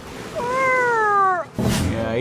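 A single drawn-out cat meow, about a second long, falling in pitch. A short noisy burst follows near the end.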